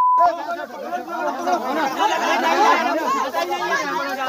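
A crowd of men talking and shouting over one another, many voices at once. A steady, single-pitched bleep tone cuts off about a quarter second in.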